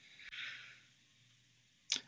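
A man's soft, short breath drawn in between sentences, lasting about half a second near the start.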